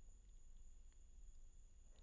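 Near silence: room tone with a faint steady high-pitched tone.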